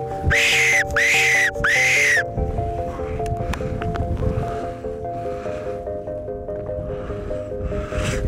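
A predator caller plays three high squealing calls in quick succession about half a second apart, each rising then falling in pitch, to lure a fox in. A rough low rumble follows, over steady background music.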